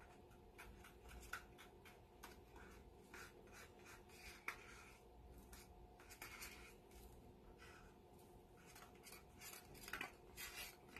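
Faint scraping and light ticking of a plastic paint stick against a clear plastic cup as pouring paint is worked into it, with one sharper tick about four and a half seconds in.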